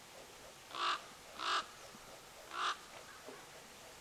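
A crow cawing: three short, harsh caws about a second apart, then a fainter fourth call near the end.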